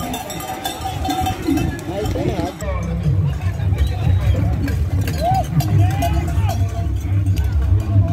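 Crowd voices outdoors over music from a loudspeaker, its heavy bass coming in strongly about three seconds in.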